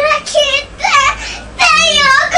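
A young child's voice singing in short, high-pitched phrases, the loudest near the end.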